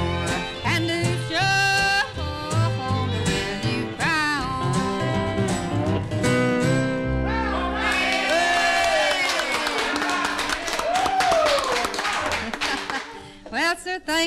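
A country song with singing and guitar accompaniment, played from a 1950s radio transcription disc, coming to its end on a long held final chord that fades out near the end.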